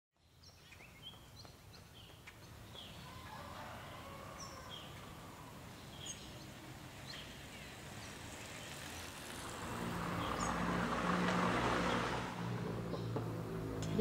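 Street ambience fading in from silence: birds chirping in short calls throughout, with a vehicle's engine swelling up as it passes, loudest about eleven seconds in.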